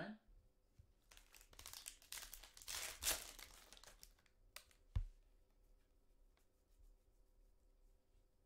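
Foil wrapper of a Panini Prizm soccer card pack being torn open and crinkled, for a couple of seconds about a second in. A single thump follows about five seconds in, then faint clicks as the cards are handled.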